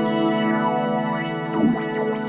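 Roland Boutique D-05 digital synthesizer holding a sustained chord while a sharp resonant EQ peak sweeps down through it and starts back up near the end, a filter-like sweep made with the equalizer on the digital waves.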